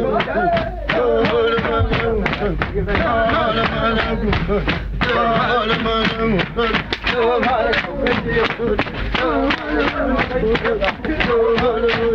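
Wixárika (Huichol) peyote-dance music: a wavering melodic line with voices over a quick, steady beat of sharp knocks.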